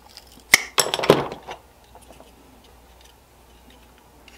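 Small hard objects handled and knocked on a workbench: one sharp click about half a second in, then a brief clatter.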